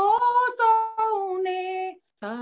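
A woman's high voice singing a line of a Gujarati Jain devotional bhajan, unaccompanied, in long held notes that bend slightly in pitch. The sound cuts off abruptly near the end.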